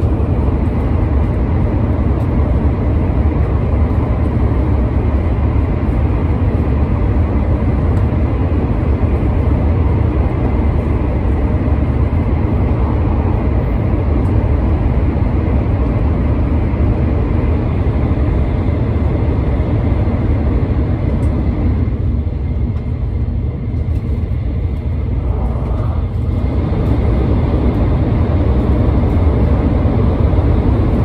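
Shinkansen train running, heard from inside the passenger cabin: a steady low rumble. About two-thirds of the way through, the sound turns duller and slightly quieter for a few seconds, then comes back a little louder near the end.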